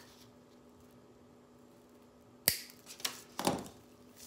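Wire cutters snipping off the tail of a plastic zip tie: one sharp snap about two and a half seconds in, followed by a few softer handling sounds.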